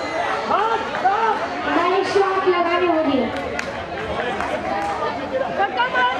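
Several men talking and calling over one another, with a couple of short sharp clicks about halfway through.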